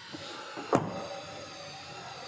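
A Skoda Kodiaq's rear passenger door being shut: one short thud a little before a second in, over a faint steady hiss.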